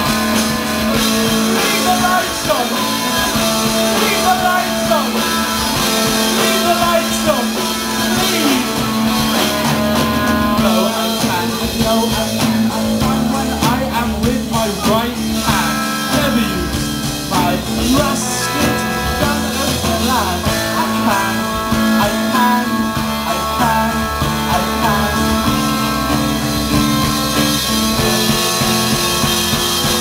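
Live rock band playing at full volume, electric guitar and drums, heard from the audience.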